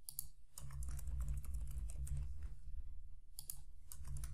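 Typing on a computer keyboard: a run of irregular light key clicks over a low steady hum.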